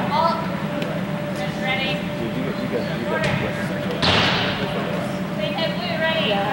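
Short voices calling out in a large indoor hall over a steady hum, with a few faint sharp knocks and a louder noisy burst about four seconds in.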